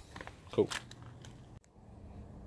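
A single short spoken word over a few faint clicks, then a sudden brief dropout and a faint low background hum.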